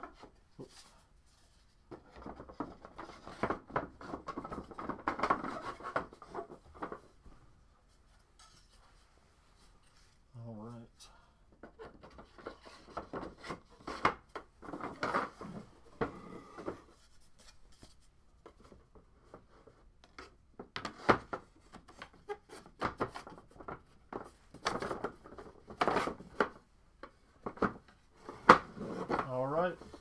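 Quarter-inch laser-cut wooden shelf panels being slid together by their slots and pressed into place: bursts of wooden clicks, taps and scraping, with quiet pauses between.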